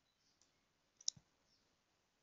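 Near silence with a single faint click about a second in, a fingertip tapping the phone's touchscreen.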